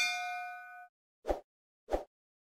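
Notification-bell 'ding' sound effect, a ringing chime of several tones that fades out a little under a second in, followed by two short, deep pops.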